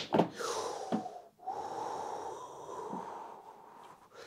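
A man breathing hard through his nose close to the microphone, in snort-like breaths, after a shot on a small snooker table. A light knock of the balls comes about a second in.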